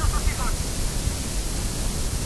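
Steady hiss and low rumble of an old, noisy recording, with a voice for about the first half-second and then a pause in the talk.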